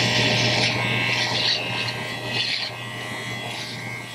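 Electric beard trimmer running with a steady hum, its blades rasping through beard hair in uneven passes against the cheek. It gets quieter over the second half.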